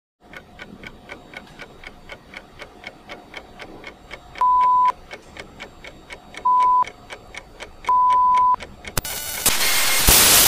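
Rapid, even clock-like ticking sound effect, about five ticks a second. It is overlaid from the middle on by three loud, steady high beeps: the second is short and the third is the longest. About nine seconds in it gives way to a burst of static hiss.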